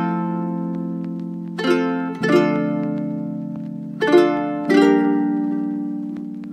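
Background music: a slow instrumental of plucked-string chords, struck about four times, each one ringing out and fading before the next.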